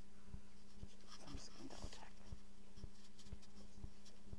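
Cloth and mat rustling about a second in as a person gets up from a yoga mat on the floor. Behind it are a steady low hum and faint low thumps about twice a second.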